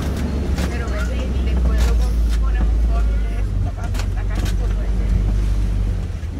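Open-air safari ride truck driving along, its engine and drivetrain giving a steady low rumble, with scattered light knocks and rattles from the body as it rolls over the rough track.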